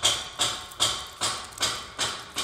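Footsteps at a steady walking pace, about two and a half steps a second.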